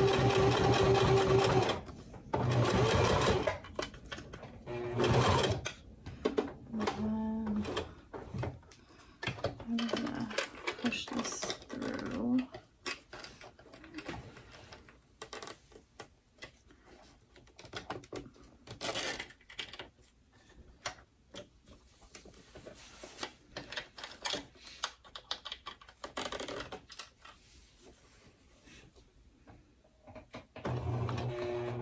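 A domestic sewing machine stitching a zipper onto glitter vinyl in short runs: a steady run at the start, brief runs a few seconds in and again near the end. Between the runs, the machine stops while the work is repositioned, and there are scattered small clicks and handling noises.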